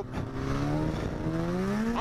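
Polaris SKS 700 snowmobile's two-stroke twin engine running under throttle, its pitch rising steadily in the second half as the sled accelerates.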